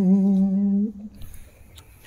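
A single voice chanting Khmer smot, holding one long wavering note that ends about a second in; the rest is quiet room tone.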